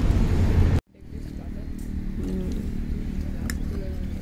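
Loud outdoor background rumble that cuts off abruptly less than a second in, followed by quieter open-air ambience with a low steady hum and faint voices.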